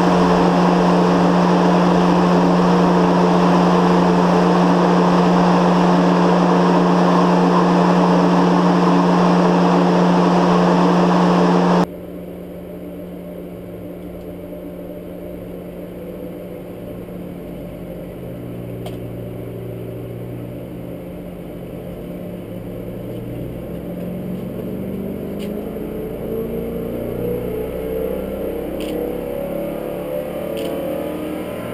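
Ford Y-block V8 running on an engine dyno, loud and steady at a held speed. About twelve seconds in, the sound drops to a quieter, muffled engine note heard through the control-room window, which then slowly rises in pitch and loudness as the engine pulls up.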